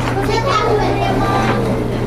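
Indistinct chatter of adults and young children mixed together, over a steady low hum.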